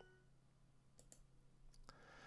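Near silence with a few faint computer mouse clicks, a pair about a second in and another near the end. At the start the last ring of Duolingo's correct-answer chime fades out.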